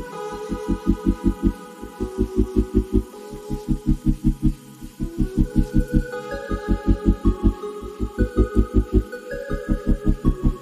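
Background music: a fast, even pulsing bass at about six beats a second under held synth chords that change every second or two.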